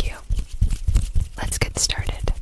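A woman whispering close to the microphone, with short soft low thumps between the words.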